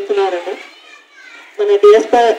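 A woman speaking into a handheld microphone, her voice loud and close, with a short pause in the middle of the stretch.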